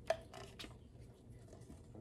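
Handling noise as a wooden clipboard is raised into view: one sharp click just after the start, then a few faint knocks and rubs.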